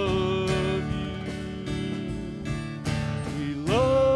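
Live worship band playing guitars and a drum kit. A held sung note stops about a second in, the band plays on without voice, and near the end a voice slides up into a new held note as the music grows louder.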